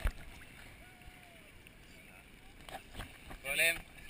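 Sea water splashing on a GoPro Hero2 in its waterproof housing as the camera comes up out of the sea: one sharp splash at the start, then faint muffled water noise with a few small knocks. A man says 'um' near the end.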